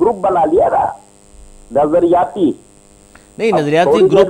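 A man talking in short bursts with pauses between them, over a steady electrical hum and a faint, steady high-pitched whine.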